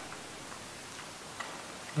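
Pause in speech: faint room tone hiss with a few faint, irregular ticks.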